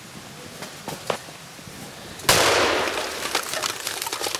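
A single loud bolt-action rifle shot about two seconds in, its report ringing away through the forest for over a second, followed by lighter scattered cracks and snaps.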